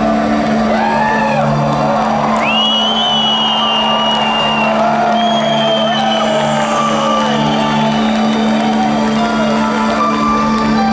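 A steady low droning intro track over the arena PA, with the concert crowd whistling and whooping over it. Long high whistles are held about two to three seconds in and again around five seconds.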